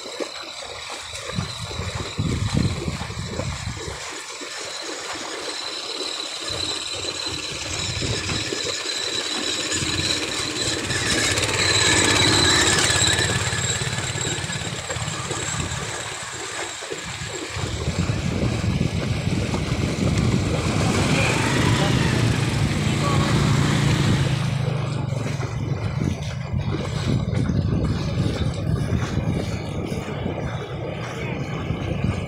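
A motorcycle engine running at low speed as a motorcycle-sidecar tricycle wades through floodwater on a submerged road. Its low note grows stronger about halfway through.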